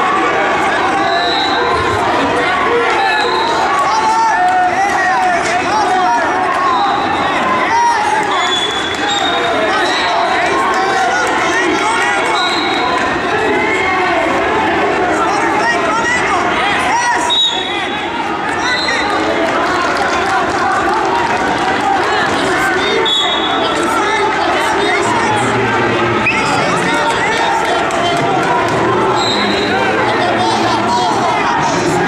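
Spectators and coaches at a college wrestling match shouting and talking over one another without pause in a large gym hall, with occasional brief high-pitched squeaks.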